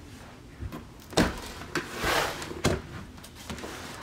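Paperback workbooks being handled on a wooden tabletop: a few soft thumps as the books are set down, the loudest a little over a second in, and a brushing slide of a book across the wood around two seconds.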